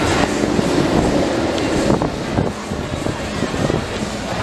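Incredible Hulk Coaster steel roller coaster train running along its track on a test run: a steady, loud rumble.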